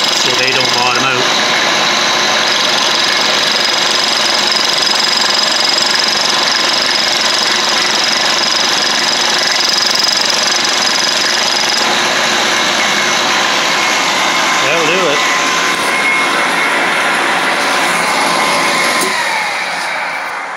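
Milling machine running, its cutter machining a scope ring mount clamped in the vise: a steady loud mechanical noise with a high whine. Near the end a tone falls in pitch as the machine starts to wind down.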